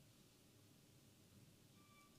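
Near silence: faint room tone with a low hum, and a brief faint tone near the end.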